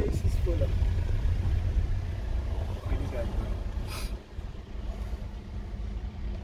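Steady low rumble of a car running and moving slowly, heard from inside the cabin, with faint indistinct voices and a brief hiss about four seconds in.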